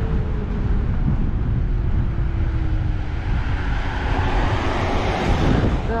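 Wind rumbling on the microphone of a moving scooter, with a faint thin whine slowly falling in pitch and a rush of noise that swells in the second half.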